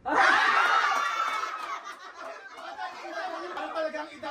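A roomful of people laughing, loudest in a burst over the first second and a half, then dying down to scattered giggles and chatter.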